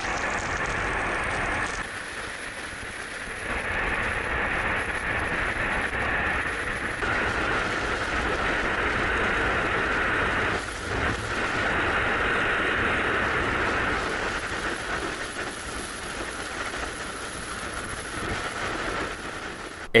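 Steady rushing roar of air past a skydiver's camera in freefall, stepping up and down in level a few times.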